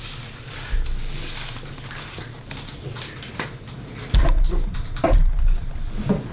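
Low thumping and rumbling handling noise from the camera being adjusted and reframed, with one bump about a second in and a louder stretch of knocks and rumble in the second half.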